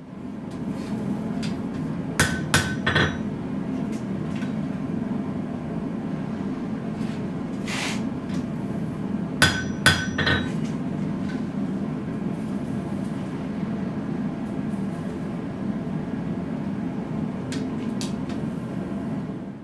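Hand hammer striking a hot steel blade on an anvil in a few spaced, light blows: three around two to three seconds in, one near eight seconds and three more around nine to ten seconds. These are the final straightening and shaping corrections at lower heat. A steady low roar runs underneath.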